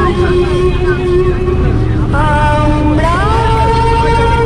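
A woman singing long held notes into a handheld karaoke microphone inside a moving bus, over the steady low rumble of the bus's engine and road noise. Her voice climbs to a higher note about three seconds in.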